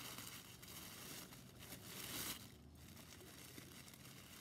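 Tissue-paper wrapping rustling and crinkling as it is pulled off a packaged wine glass, busiest over the first two seconds and fainter after.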